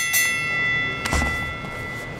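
A bell-like chime rings out and slowly fades, with a dull thud about a second in.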